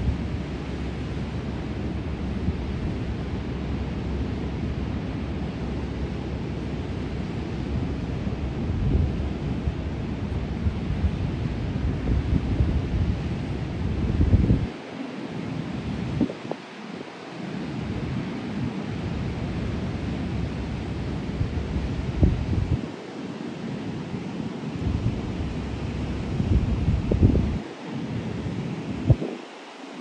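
Wind buffeting the microphone in uneven gusts over the steady wash of Pacific surf breaking on the beach. The wind rumble drops out briefly several times in the second half.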